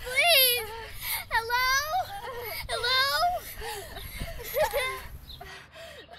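A young girl wailing and sobbing in distress, her high, wavering cries coming in several bursts, mixed with desperate calls for help.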